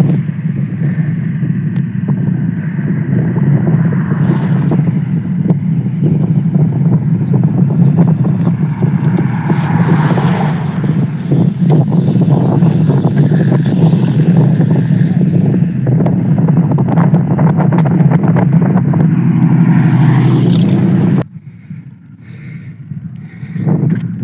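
Wind buffeting a handheld phone's microphone while cycling along a road: a loud, steady low rumble with crackling gusts. It drops away suddenly about 21 seconds in to much quieter wind.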